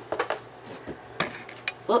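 A few light clicks and knocks from books being handled on a tabletop, with one sharper click a little past the middle.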